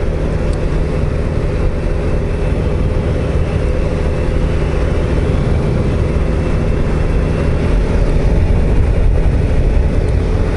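Suzuki SV650S 645 cc V-twin engine running at a steady cruising speed, with wind and road noise over the microphone, getting slightly louder near the end.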